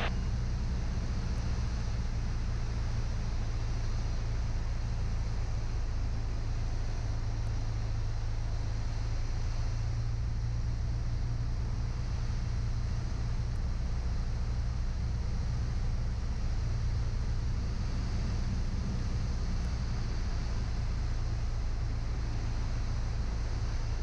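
Piper Cherokee 180's four-cylinder Lycoming engine and propeller droning steadily, heard from inside the cabin on final approach, with some rush of air.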